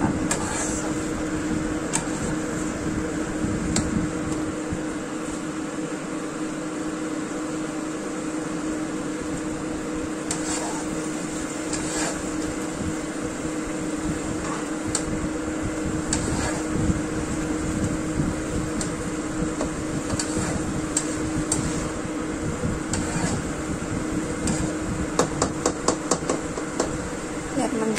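Black plastic spatula stirring vegetables in a nonstick wok, with scattered clicks and taps against the pan, a cluster of them near the end. Under it a steady hum and hiss of kitchen appliances runs on.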